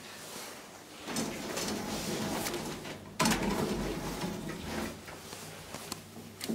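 Elevator doors of a 1987 Valmet-OTIS hydraulic lift sliding and rattling, with a sharp knock just after three seconds in.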